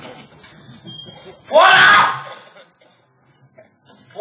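A man's loud shout through the stage microphone, lasting about half a second, about a second and a half in. A steady high chirring of crickets runs under it.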